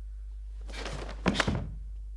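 Karate gi swishing through a fast kata technique, ending in two sharp snaps about a second in.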